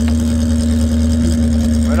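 Vehicle engine idling steadily: a low, even hum with one steady tone above it. There is a brief click right at the start.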